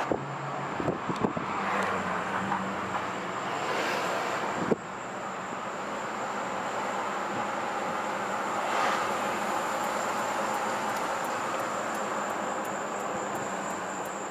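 Steady road and tyre noise inside a moving car, with a thin high whine running through it.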